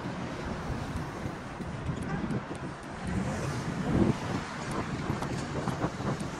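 Road traffic passing, with wind buffeting the microphone as a low rumble. The sound swells to its loudest about four seconds in.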